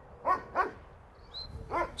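A dog yipping: three short, high-pitched calls, two close together at the start and another near the end.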